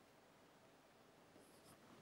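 Faint marker on a whiteboard: a short scratch of writing about one and a half seconds in, over near-silent room tone.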